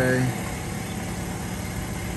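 Steady low hum of an idling engine, with the tail of a spoken word at the very start.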